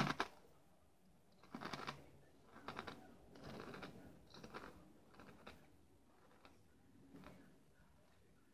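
Chewing a crunchy potato chip: a crisp crunch at the start, then faint crackly crunching in irregular bursts that thin out near the end.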